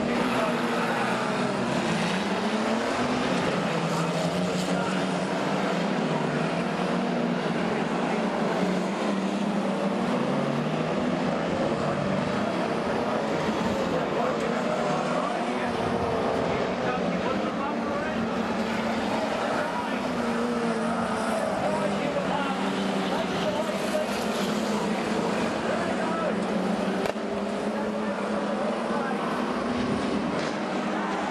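Several stockcar engines running hard together, their pitches rising and falling as the cars race round the dirt oval.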